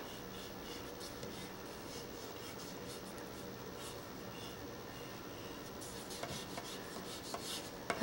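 Water-soluble oil pastel scratching and rubbing faintly across paper in short strokes, busier near the end, over a faint steady hum.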